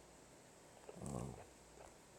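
A man's short "um" hesitation hum about a second in, against quiet room tone.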